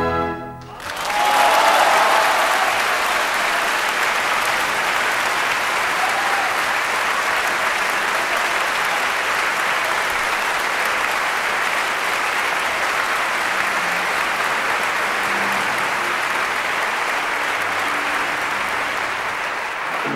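Theatre audience applauding steadily after a musical number of the opera, starting just under a second in, once the orchestra's last chord has died away.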